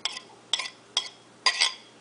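A metal utensil clinking against a ceramic plate and a stainless steel mixing bowl, tapping chopped chili off the plate: sharp clinks with a short ring, about every half second, stopping near the end.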